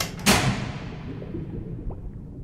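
Cartoon sound effect of switches being thrown on a stage lighting panel: a short click, then a heavy thud a quarter second later whose ring fades away over about a second.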